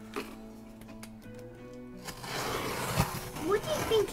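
Quiet background music with held notes. About halfway through, a scratchy rustling noise starts as hands work at a cardboard shipping box. A child's voice is heard briefly near the end.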